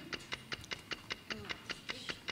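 Rapid, even ticking of a quiz countdown-clock sound effect, about five ticks a second.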